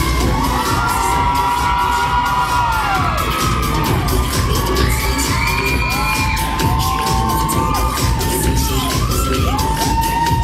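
Dance music with a steady beat playing for a stage routine, with an audience cheering and whooping over it throughout.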